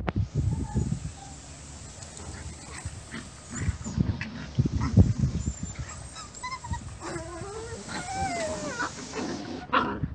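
Puppies yipping and whining as they play-fight, with a run of wavering, high-pitched whines near the end, over low thumps and rumble.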